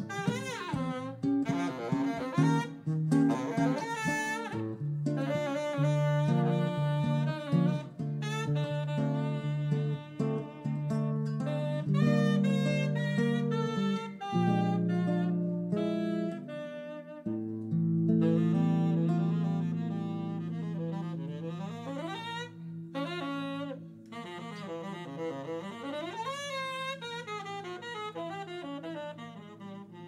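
Live saxophone playing a jazz melody with quick runs of notes, over acoustic guitar accompaniment with sustained low notes. Near the end the saxophone swoops up and down in pitch.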